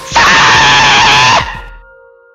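A harsh metalcore vocal scream by a male singer, held for about a second and a quarter before trailing off.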